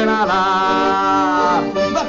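Male voice singing a long held wordless note with musical accompaniment; the pitch dips just after the start, the note breaks off about a second and a half in, and shorter notes follow.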